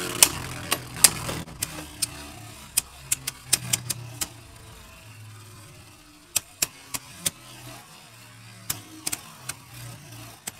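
Two Beyblade tops spinning in a plastic stadium, with a steady low whir and sharp clicks as they strike each other: a quick flurry in the first four seconds, then a few more hits about six to seven seconds in and again near the end.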